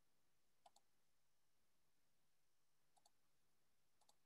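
Near silence with two faint double clicks, one a little under a second in and one about three seconds in: a computer mouse being clicked.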